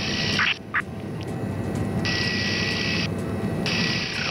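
Rescue helicopter's engine and rotor noise heard from inside the cabin while it hovers for a winch hoist: a steady low rush. Over it a hiss with a thin steady whine cuts in and out a few times.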